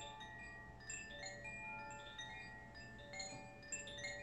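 A handheld cylindrical wind chime dangled from its cord and swung. It sounds an irregular scatter of clear, ringing tones at several pitches that overlap and fade slowly.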